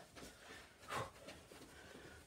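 A quiet room with one short thump about a second in, from a barefoot man moving through a judo wall uchikomi drill: pushing off the wall and turning.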